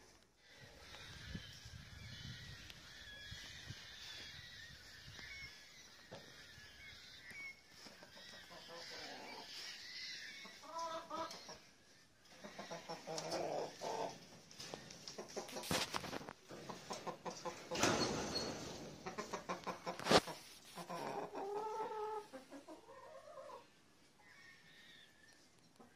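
A flock of hens, mostly laced Wyandottes, clucking, with short repeated calls through the second half. A couple of sharp clicks, the louder one about twenty seconds in.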